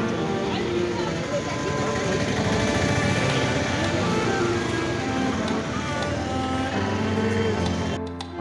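Busy market-street ambience: many voices talking at once and road traffic going by, with background music faintly underneath.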